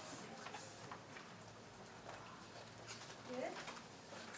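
Quiet hall with scattered faint clicks and small knocks, and one short rising voice sound about three and a half seconds in.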